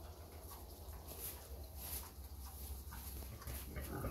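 Grey Mangalița pig rooting and grunting, a few short grunts with the loudest near the end.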